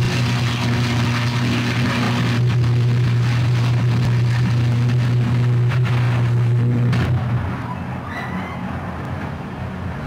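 Sustained high-voltage electrical arc at a burning substation: a loud, steady low buzzing hum with crackle that cuts off suddenly about seven seconds in, leaving a quieter rushing noise from the fire.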